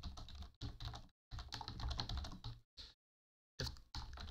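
Typing on a computer keyboard: a quick run of keystrokes in bursts, broken twice by brief spells of total silence.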